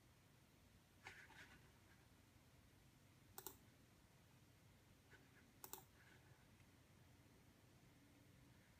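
Two sharp computer mouse clicks about two seconds apart, each a quick double tick of press and release, over faint room tone. There is a softer rustling noise about a second in.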